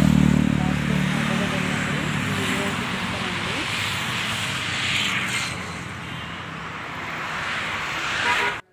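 Road traffic: a motor vehicle's engine hums loudly as it passes at the start, fading within about a second and a half, then a steady traffic hiss with another vehicle going by about five seconds in.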